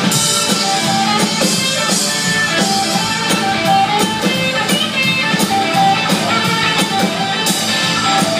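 Live band playing an instrumental passage with no singing: electric guitar over keyboard and drum kit, at steady full volume.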